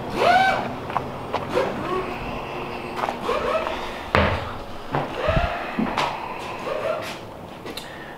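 The side RV door of an enclosed cargo trailer being worked and someone climbing in: scattered latch clicks and knocks, short squeaks, and a heavy low thump about five seconds in.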